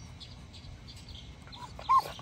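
A puppy gives two short, high yelps close together near the end, over faint bird chirping.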